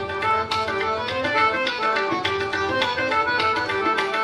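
Harmonium playing a melody in raga Kafi with tabla accompaniment. The reed notes move quickly from one pitch to the next over a steady run of tabla strokes.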